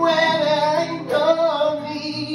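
Live singing over an acoustic guitar: a voice holds two long notes, the second starting about a second in.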